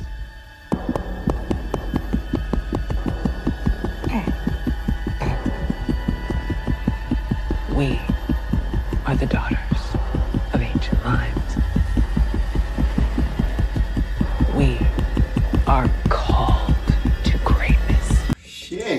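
Dramatic heartbeat sound effect: a rapid, evenly spaced pounding over a deep steady hum, marking a heart being stopped or squeezed. A few short strained vocal sounds rise over it, and it cuts off at the very end.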